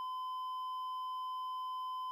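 A censor bleep: one steady, unbroken single-pitch beep laid over the speech, masking the spoken words.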